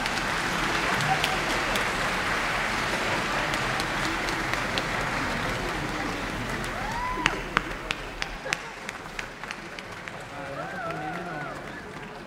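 Audience applauding a curtain call. The steady applause thins to scattered individual claps about seven seconds in, with a few voices calling out over it.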